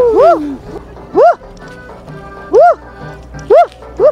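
Four short yelps, each rising and falling in pitch, spaced about a second apart, over background music.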